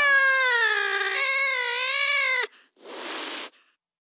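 A sampled cat's long meow that wavers in pitch and cuts off sharply after about two and a half seconds, followed by a short burst of hiss, closing out the electronic track.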